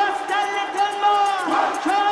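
Techno from a live DJ set in a stretch without a kick drum: a vocal sample repeats over a steady held synth tone and fast hi-hat ticks.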